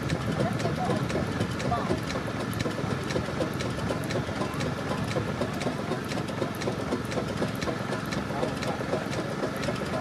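Indistinct chatter of several people talking at once, over a steady low engine hum.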